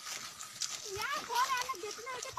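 Indistinct human voices rising about a second in, mixed with scattered clicks and rustles.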